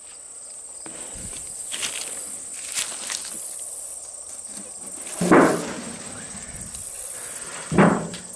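Insects trilling steadily in the grass, a high shrill tone with a higher hiss above it that comes and goes every second or so. Two louder short handling noises from a board being moved come about five seconds in and just before the end, with a few light clicks earlier.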